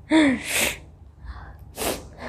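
A woman sneezes, set off by sniffed black pepper: a short falling 'ah' breaks into a sharp 'choo'. Near the end comes a second short, sharp burst of breath.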